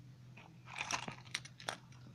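Yellow plastic Kinder Surprise toy capsule being popped open by hand: a quick run of sharp plastic clicks and snaps in the second half.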